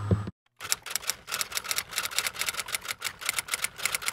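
A rapid, irregular run of sharp typewriter-like key clicks, about eight a second, starting just over half a second in after a brief silence.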